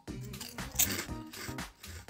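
Someone biting into and crunching a Cheetos Hashtags puffed snack, with a crisp crunch about a second in, over background music.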